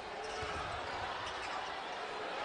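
A basketball dribbled on a hardwood court, with a couple of low bounces about half a second in, under the steady noise of an arena crowd.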